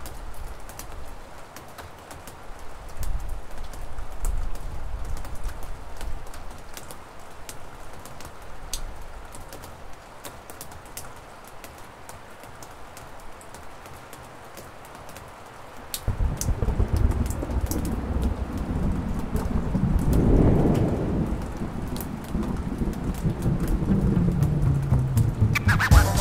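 Rain falling with scattered drop clicks, then about two-thirds of the way through a low rumble of thunder comes in, swells and stays loud to the end.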